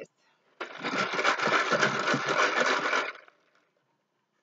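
A deck of tarot cards being shuffled rapidly: a dense, fast rustle of many cards clicking past each other for about two and a half seconds, starting about half a second in and stopping abruptly.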